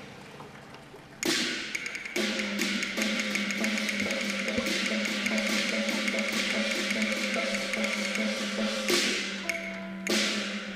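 Cantonese opera ensemble music led by percussion: quick wood-block taps and sharp ringing strikes over a steady held low note, coming in abruptly about a second in as the previous note dies away.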